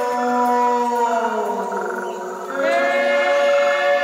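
Voices singing long held notes without accompaniment; the pitch slides slowly down over the first two seconds, then a new held note starts about two and a half seconds in.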